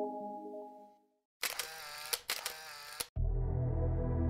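Logo-jingle chime fading out, then two short bright sound-effect bursts of under a second each. Soft ambient background music begins about three seconds in.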